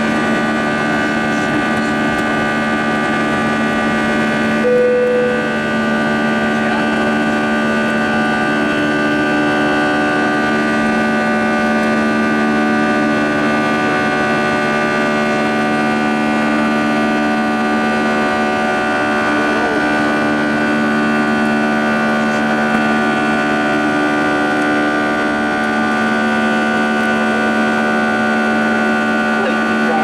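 Airbus A320's two CFM56-5A1 turbofan engines at takeoff thrust, heard from the cabin over the wing: a loud, steady drone with several steady tones, through liftoff and the initial climb. A short single tone sounds about five seconds in.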